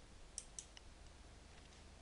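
Faint computer mouse clicks, three quick ticks about half a second in, over a low steady hum.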